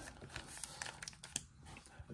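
Faint crinkling and small scattered taps from a stack of 1987 Donruss wax-paper card packs being handled and set down on a tabletop.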